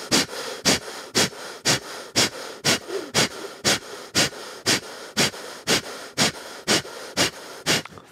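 A person doing a rapid, forceful pranayama breathing exercise, pumping the lungs with sharp breaths at an even rhythm of about two a second.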